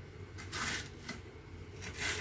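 Kitchen knife slicing yellow capsicum on a wooden chopping board: a few crisp cuts, one about half a second in, a small one near the middle and another near the end.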